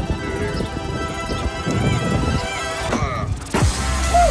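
Background music with a steady beat. Just after three seconds in it thins out briefly with a falling sweep, then comes back with a heavy deep bass.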